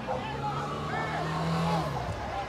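A car engine running on the street, a steady low hum rising slightly in pitch that stops near the end, with distant voices calling over it.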